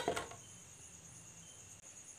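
Crickets chirping in a steady, high, even trill. At the very start there are a couple of light clacks as a plastic cover is set down over a metal tray of dishes.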